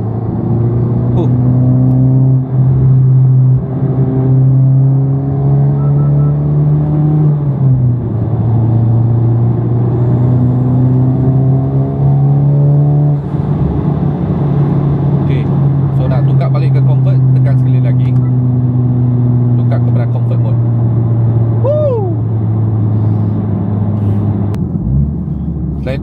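Honda Civic Type R FL5's turbocharged four-cylinder engine accelerating hard in +R mode, heard from inside the cabin: the revs climb through a gear, drop at an upshift about seven seconds in, climb again and drop at a second upshift about thirteen seconds in, then hold fairly steady at speed.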